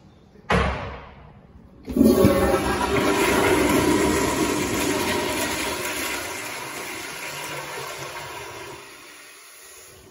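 Commercial toilet with a chrome flushometer valve being flushed: a sharp clack as the valve is pushed, then about a second later a loud rush of water that gradually dies away over several seconds.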